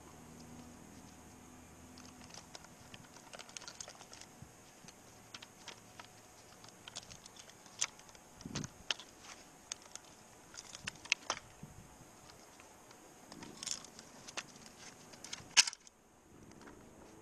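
Scattered light clicks and clinks of metal climbing and rigging hardware (carabiners and rope gear) being handled at a tree climber's harness, with one sharper click near the end.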